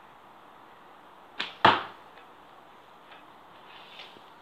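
An arrow shot from a bow at a cardboard target: two sharp cracks about a second and a half in, a quarter second apart, the second louder with a short ringing tail.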